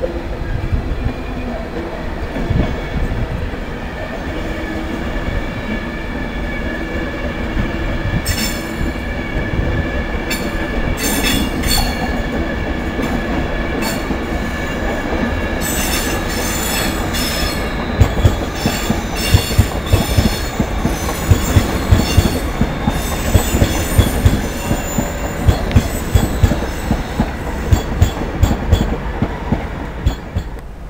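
Electric passenger trains running slowly over the pointwork at the station throat: first a Virgin Class 390 Pendolino, then a London Midland Class 350 unit. A steady rumble throughout, with wheel squeal from about eight seconds in and a run of sharp clicks over the rail joints and points in the second half.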